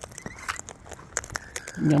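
Sulphur-crested cockatoos cracking and crunching sunflower seeds in their beaks: many irregular, sharp little cracks.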